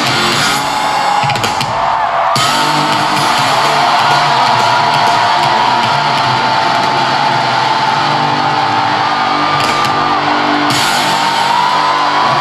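Live pop-concert music played loud through an arena sound system, with guitar and drums, steady throughout.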